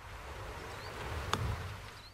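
Golf club striking the ball on a low chip shot: one sharp click a little over a second in, over a steady outdoor hiss.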